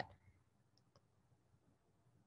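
Near silence: faint room tone, with two faint clicks just under a second in.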